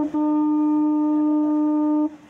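A boat's horn gives a very short toot, then one long steady blast of about two seconds on a single low note that stops sharply.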